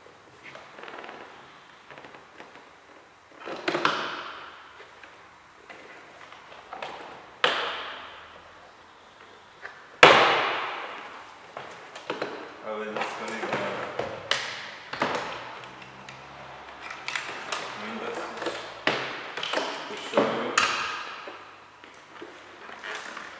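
Plastic retaining clips of an Opel Astra K rear door panel snapping loose as the panel is pulled off the door. There are a few sharp snaps, the loudest about ten seconds in with a brief rattle after it. These are followed by a run of small clicks and knocks as the panel is worked free of its stiff clips.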